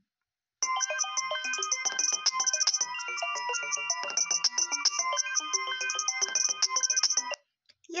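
Student-composed ringtone built with a GarageBand arpeggiator, playing back: a fast, repeating pattern of short electronic synth notes. It starts about half a second in and cuts off abruptly near the end when playback is paused.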